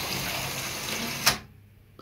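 LEGO Monorail 6399 motor car running along its track with a steady whirring gear noise, then a sharp click about a second and a quarter in as it stops dead: the station's stop piece has pushed its switch pin to the centre, off position.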